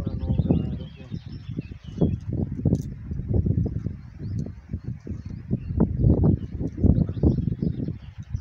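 Irregular low rumbling and buffeting on the microphone, with birds chirping faintly above it.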